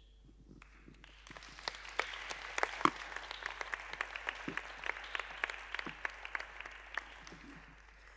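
Applause, many people clapping. It builds up over the first two seconds, then tails off and fades out near the end.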